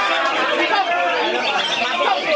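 Dense chorus of many caged songbirds singing at once, with a green leafbird among them, over the chatter of a crowd: a steady jumble of quick, sliding whistled notes.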